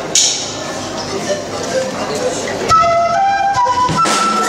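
Andean flute starting a melody about two-thirds of the way in, a few held notes stepping up and down in pitch, opening an instrumental piece. Before it there is an indistinct mix of room noise and voices.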